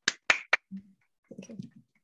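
Three sharp clicks in quick succession, followed by fainter, low, muffled sounds about a second and a half in.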